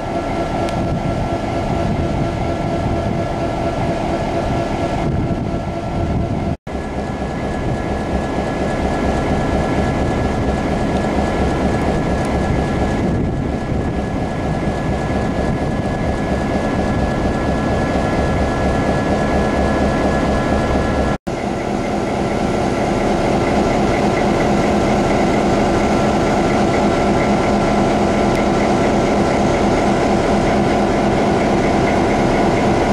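EMD GP7 diesel-electric locomotive's 16-cylinder EMD 567 two-stroke diesel idling steadily, a low rumble with fixed tones above it. The sound drops out for an instant twice.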